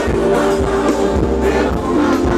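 Live music played loud through a stadium sound system, with several voices singing together over a steady bass line.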